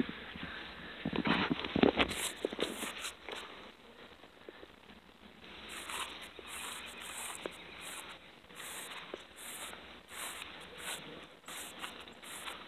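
Footsteps on garden soil as a person walks between raised beds, coming roughly twice a second, with a louder patch of rustling about one to two seconds in.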